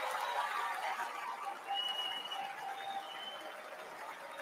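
A large arena crowd applauding, the applause slowly dying down.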